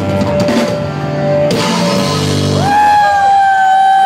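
Live rock band with drum kit and electric guitars playing the last bars of a song, with a cymbal crash about a second and a half in. The low end drops out near the end, leaving a single long, high held note.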